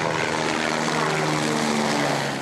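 A motor running steadily, its pitch holding nearly constant, fading out just after the end.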